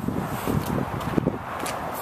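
Wind rumbling on the microphone and rustle from the handheld camera as it moves, with a couple of faint clicks in the middle.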